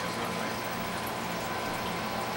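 Steady background hum and hiss of room noise, even throughout with no distinct event standing out.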